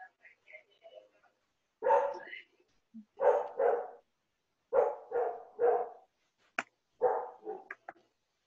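A dog barking in short, loud bursts, about nine barks in groups of two or three, with a sharp click between the last groups.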